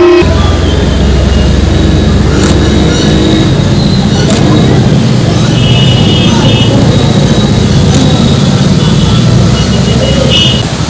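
Outdoor street ambience: a steady low rumble of road traffic, heaviest in the first few seconds, under faint voices from the crowd.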